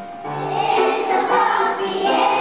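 Kindergarten children's choir singing a song together over a musical accompaniment, with a short break between phrases right at the start.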